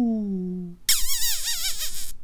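A cartoon voice's drawn-out 'ooh' slides down in pitch and fades, then about a second in a loud, high squeal with a fast wobbling pitch begins, a comic kissing noise.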